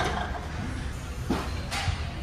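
Large gym room noise: a steady low hum with a sharp knock at the start, another knock about a second later, and a short hiss and dull thud near the end.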